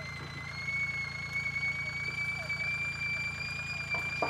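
Compact tractor idling: a steady low engine rumble with a thin high whine on top that creeps slightly upward in pitch.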